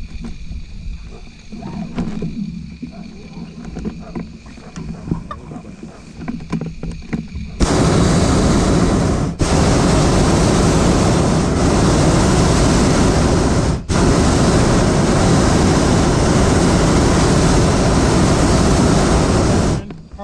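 Hot air balloon's propane burner firing overhead, a loud steady roar that starts about a third of the way in and runs in three long blasts with two brief breaks, stopping just before the end. Before it, only faint low background noise.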